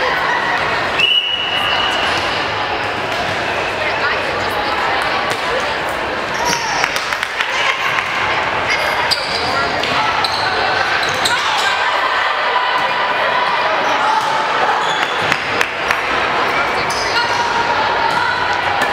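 Indoor volleyball rally in a large gym. A referee's whistle blows for about a second, a second in, and then comes a string of sharp ball hits as the ball is served and played back and forth, with players and spectators calling out and shoes squeaking on the hardwood court.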